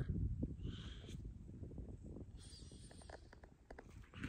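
Low wind rumble on the microphone with faint rustling and light ticks, fading away over a few seconds.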